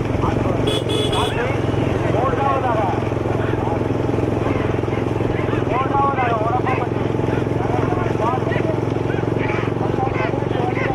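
A motor vehicle's engine runs steadily. Repeated men's shouts ring out over it, and there is a brief high-pitched tone about a second in.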